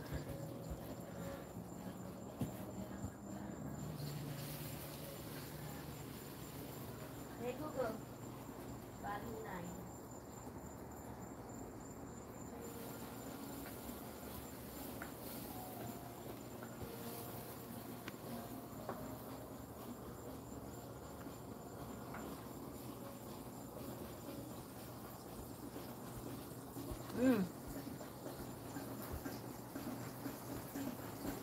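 Faint, steady high-pitched trill of night insects, heard through the quiet, with a couple of brief faint voice sounds.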